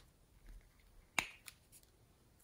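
Small plastic craft containers being handled: one sharp click about a second in, then a lighter click.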